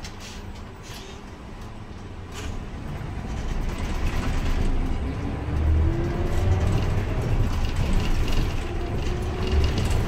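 City bus heard from inside the cabin as it pulls away and speeds up. Its low running noise grows steadily louder from about three seconds in, with a whine that rises in pitch twice as the bus gathers speed.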